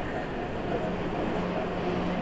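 Ambient drone music built from processed field recordings of a car assembly plant: a dense, steady noisy wash with faint held tones fading in and out.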